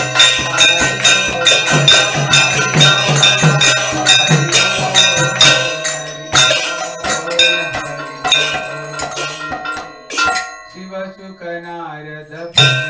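Kirtan music: a two-headed mridanga drum and brass hand cymbals play a fast, steady rhythm, with bells ringing over it. About ten seconds in the drumming drops away, leaving a single wavering pitched sound.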